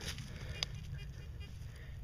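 Faint scratching and crumbling of a hand sifting through loose soil in a dug hole, with a couple of small clicks.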